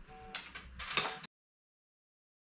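Two light knocks from handling the metal casing of a 1980s external 5.25-inch floppy drive, over faint room noise. The sound then cuts off to dead silence a little over a second in.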